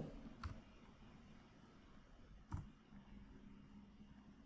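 Near silence broken by two single computer-keyboard key clicks, a faint one about half a second in and a sharper one about two and a half seconds in.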